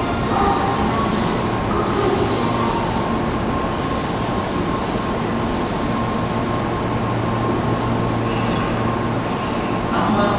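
Tobu 30000 series electric train standing at the platform, its onboard equipment giving off a steady hum and whir.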